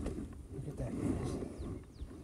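Wind buffeting the microphone of a handheld camera, an uneven low rumble.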